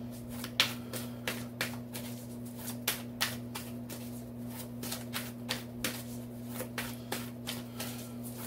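A deck of tarot cards being shuffled by hand: a run of quick, irregular card snaps and slaps, several a second.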